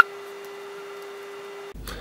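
A steady hum at one low pitch that stops abruptly shortly before the end.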